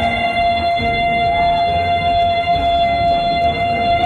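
Female vocalist holding one long, high sung note at a steady pitch into a microphone, over instrumental accompaniment.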